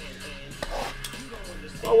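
Hands handling a cardboard trading-card box, with light scraping and small clicks as the lid and contents are slid out.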